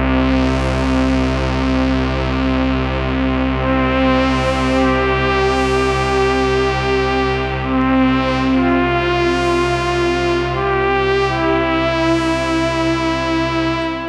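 Reason's Europa software synthesizer playing a rich sustained patch: a steady low bass drone under a slow line of held, changing notes.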